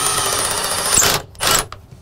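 Cordless impact driver (Milwaukee M18 FUEL) hammering a #9 hex-head structural screw at a 45-degree angle through a steel joist hanger into the wood, seating it and pulling the hanger in tight. The rapid hammering with a high motor whine runs until about a second in, stops, and a short second burst follows.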